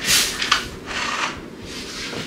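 A few soft rustling, rubbing brushes in quick succession, with no speech.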